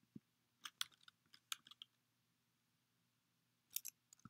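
Quiet computer keyboard keystrokes as letters are typed: a single tap at the start, a quick run of taps about a second in, then a couple more near the end.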